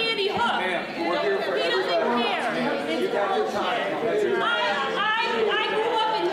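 Speech only: a woman speaking heatedly over several other voices talking at once.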